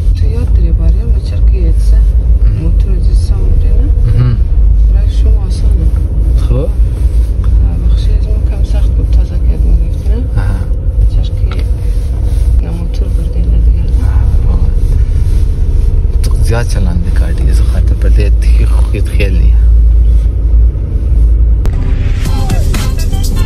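Low, steady rumble inside the cabin of a moving car, with voices talking now and then over it.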